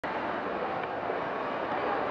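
Steady background hubbub of a crowd: an even wash of indistinct chatter with no single voice standing out.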